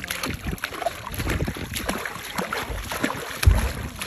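Water splashing as bare feet kick in the sea over the side of a catamaran, with wind buffeting the microphone. A heavy low thump about three and a half seconds in is the loudest sound.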